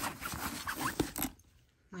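A hand rummaging inside the zippered fabric lining pocket of a handbag: rustling and scraping, with a few sharp clicks, for a little over a second, then it stops.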